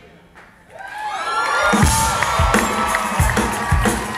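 Live rock band coming back in after a brief lull: held guitar and keyboard tones swell up, then the drums kick in about two seconds in. The crowd is cheering.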